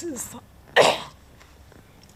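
A woman coughs once, sharply, a little under a second in, after a brief trace of voice at the start.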